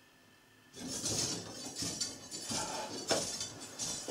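A large neodymium magnet released on a steel guide rod, sliding down and rattling against the rod in an irregular run of metallic clinks starting about three-quarters of a second in, as it bounces on the repelling field of the magnet below.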